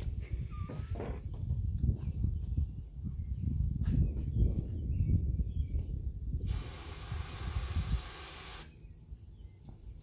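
Aerosol can of ether starting fluid spraying into a small tubeless baler tyre: one steady hiss lasting about two seconds, starting past the middle, charging the tyre so the bead can be blown onto the rim with a flame. A low rumble runs underneath before it.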